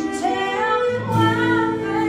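A woman singing a sustained melody, with a lower held tone joining about halfway through.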